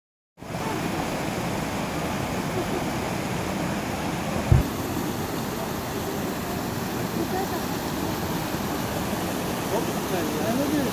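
Mountain stream rushing over rocks in small cascades, a steady even noise, with people's voices faint beneath it. A brief low thump about four and a half seconds in.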